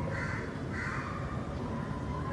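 Two short animal calls, about half a second apart, over a steady low background hum.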